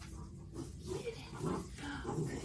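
Puppy growling and grunting in play while tugging on a rope toy, in short pitched bursts.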